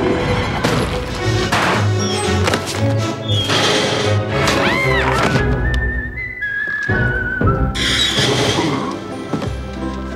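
Stop-motion film soundtrack: orchestral score with sound effects laid over it, including several thuds, a brief whistle-like glide that rises and falls about halfway through, and then a high held tone that steps down in pitch.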